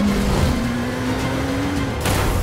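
Motorcycle engine accelerating, its pitch climbing steadily, mixed with background music.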